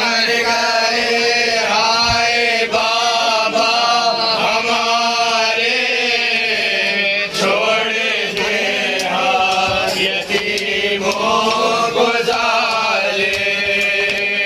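Voices chanting a noha, a Shia lament in Urdu, in long drawn-out phrases that waver and swell in pitch, loud and continuous.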